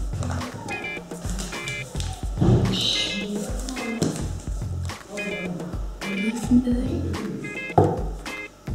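Background music with a steady beat and a short high figure that repeats about once a second.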